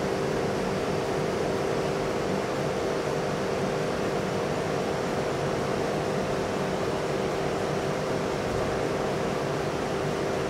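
Steady machine hum in a large industrial hall: two constant tones over an even rushing noise, with no change in level or pitch.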